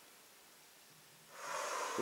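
Near silence, then about a second and a half in, a person's audible breath that grows louder and leads straight into the next words.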